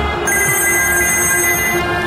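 A telephone ringing: a steady electronic ring tone of several high pitches, held for about a second and a half, over a low sustained music drone.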